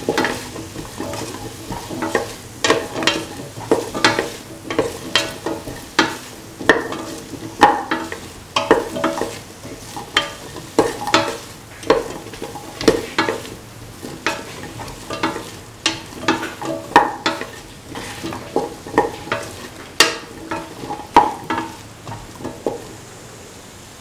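Spatula scraping and turning chopped potato, carrot, tomato and green chilli pieces in a stainless steel pan in repeated strokes, over a low sizzle of the vegetables sautéing in oil. The stirring stops shortly before the end, leaving the sizzle.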